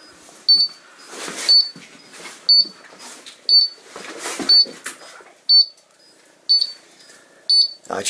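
Portable oxygen sensor alarm giving a short high beep about once a second, its warning of low oxygen (bad air) in the mine. Softer rustling noises of movement come between the beeps.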